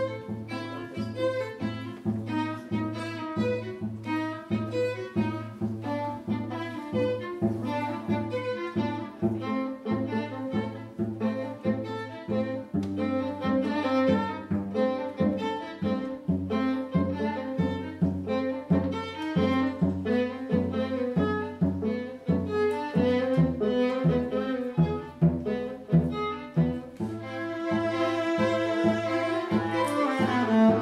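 String quartet playing a tango arrangement: the violins carry the melody over a steady pulse of short, repeated low notes from the cello, growing a little fuller and louder near the end.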